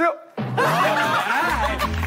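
A group of young men laughing and shouting in excitement, after a short drop-out at an edit near the start. About one and a half seconds in, a deep bass note of added music comes in under the voices.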